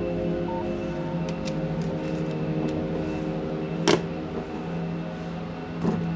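Ambient background music: a steady, held synth-like drone of several tones. A few light clicks, with a louder knock about four seconds in and another just before the end.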